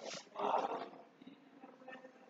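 A person's voice: a short, loud vocal sound about half a second in, after a brief noisy burst at the start, then faint room sounds.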